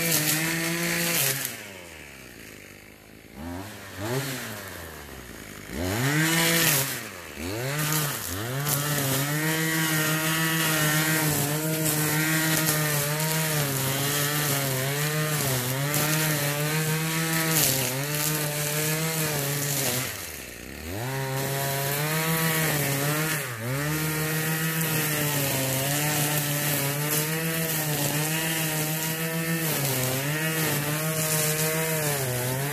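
RedMax BZG260TS string trimmer's two-stroke engine cutting weeds. It is at high revs, drops to idle about a second and a half in, is blipped up and down several times, then held at full throttle with a slight waver as the line cuts. It eases to idle briefly about two-thirds of the way through and revs back up.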